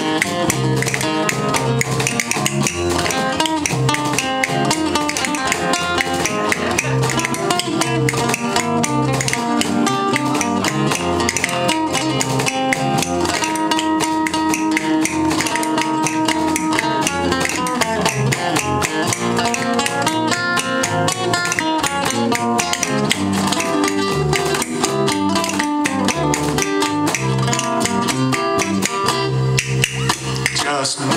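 Live instrumental break of a band song played on an orange electric-acoustic guitar and an acoustic guitar, strummed and picked with many quick notes in a tango rhythm.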